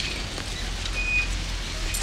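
Steady low rumble of a delivery van's engine idling under an even hiss, with a short high-pitched tone about a second in.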